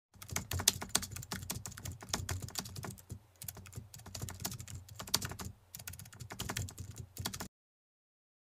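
Typing sound effect: rapid, irregular key clicks with two brief pauses, stopping suddenly near the end as the on-screen text finishes appearing.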